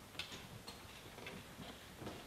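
Faint, irregular light taps and clicks, a handful in two seconds, from performers moving about the stage and handling props.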